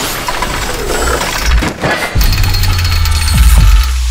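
Logo-sting sound design: a dense noisy whoosh, then a deep bass rumble that comes in suddenly about two seconds in and swells, with quick falling swoops near the end.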